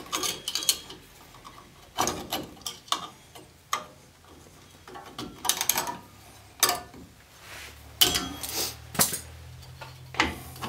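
Metal clinks and clicks of steel drum-brake hardware: a shoe hold-down spring and retainer being pressed and twisted onto its pin with locking pliers, and the brake shoe shifting against the backing plate. It comes in short clusters of clinks, the loudest near the start, about two seconds in and near the end.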